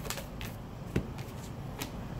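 Oracle cards being handled as a card is drawn from the deck: a few soft card clicks, the clearest about halfway through.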